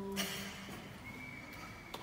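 A person's drawn-out hum, cut off by a short breathy burst about a quarter second in; then quieter, with a faint steady high tone in the second half.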